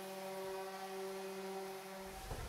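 Electric random-orbit sander running steadily on an oak board, a level motor hum with no change in pitch.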